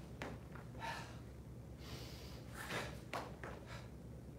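A person working through a kung fu saber form: short, sharp breaths and rustles of movement, about seven quick bursts in four seconds, over a low steady room hum.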